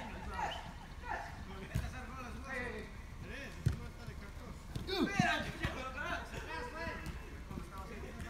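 Soccer players calling out to each other across the pitch, with two sharp thumps of the ball being kicked, a little under two seconds in and again near four seconds.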